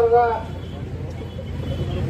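A man's voice through a handheld microphone ends a phrase about half a second in. Then comes a pause holding only a steady low hum and background noise.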